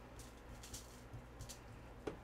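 Faint, soft rustling of gloved hands rubbing seasoning into raw beef, brushing the aluminium foil beneath, in a few light strokes.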